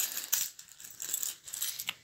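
Light metallic jingling and clicking, a quick irregular run of small clinks like small metal objects being handled or shaken.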